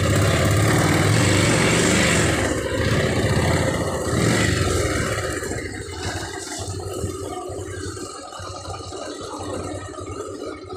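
A small vehicle engine running close by, loud for the first four or five seconds and then fading.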